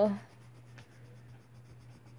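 Faint scratching of a pen on sketchbook paper as a drawing is coloured in by hand.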